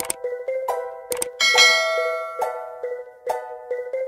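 Light background music of plucked notes, about two a second, with a bright bell-like ding about a second and a half in that rings out and fades over about a second.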